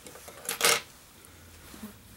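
Two quick, sharp metallic clicks close together about half a second in, from small fly-tying scissors being handled.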